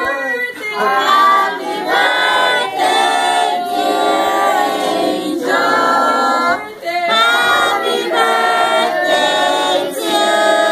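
A group of people, women's voices most prominent, singing a birthday song together unaccompanied, in long held phrases with short breaks between them.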